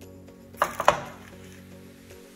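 Two quick, sharp clatters of kitchenware a moment apart, just over half a second in, over steady background music.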